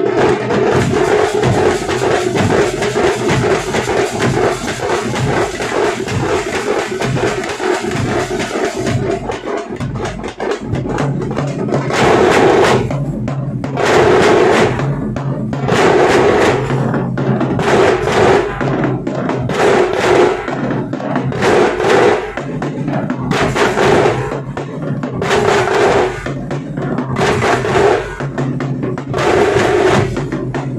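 A tamate drum troupe, stick-beaten tamate frame drums over large bass drums, playing a loud fast beat. It is a dense, unbroken roll for about the first nine seconds, dips briefly, then settles into a groove with heavy accents about every one and a half seconds.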